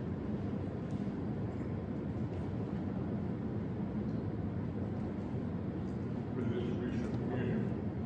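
A steady low rumble with no breaks.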